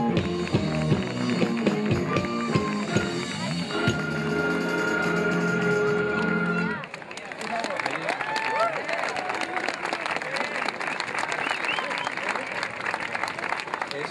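Wind band music with flutes and saxophone playing, which cuts off suddenly about halfway through. Outdoor crowd sound follows: voices talking and scattered clapping.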